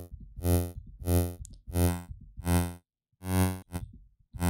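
Vital software synthesizer playing one low note over and over, about six short buzzy notes rich in harmonics with a brief gap near the end. The patch is an early brass lead in progress: a saw-based Low High Fold wavetable with a slowed attack, its timbre shifting from note to note as the wavetable frame is swept.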